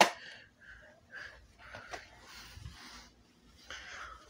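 A sharp click, then faint rustling, handling noises and breaths close to the microphone while an exit sign combo's lamp heads are adjusted by hand.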